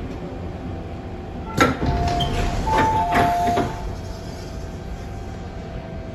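Hong Kong MTR M-train saloon doors opening at a station stop: a sharp clunk about one and a half seconds in, then a short run of two-pitched electronic tones mixed with knocks from the door gear, over the steady low hum of the stopped train.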